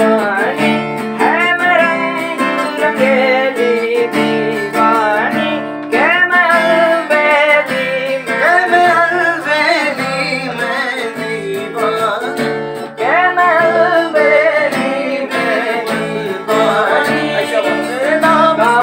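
Acoustic guitar strummed in steady chords with a voice singing a melody over it, several phrases sliding up into their first notes.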